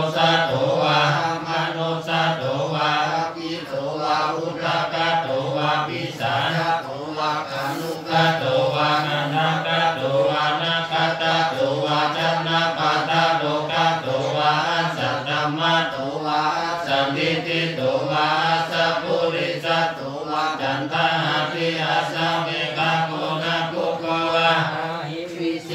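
Thai Theravada Buddhist monks chanting Pali verses together in a steady, rhythmic monotone. The leading voice is carried on a handheld microphone.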